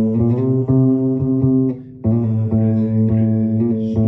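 Electric bass guitar playing held low notes, with changing notes above them. The sound drops out briefly about two seconds in, then comes back.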